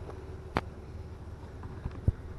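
Wind buffeting the microphone as a steady low rumble, with a single sharp click about half a second in.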